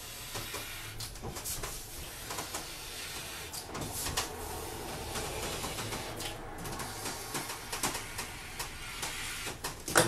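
A blade drawn along a sheet of cold laminating film to trim it to width, a steady scraping hiss broken by short rustles and crinkles of the plastic film.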